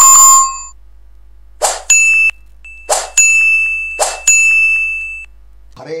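Subscribe-button animation sound effects. A bright ding opens, then three short whooshes come about a second apart, each followed by a ringing bell-like chime. A man's chanting voice starts just at the end.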